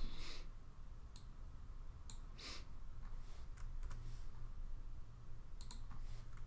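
A few faint, scattered computer keyboard key presses and clicks, with a small cluster near the end, over low steady room noise.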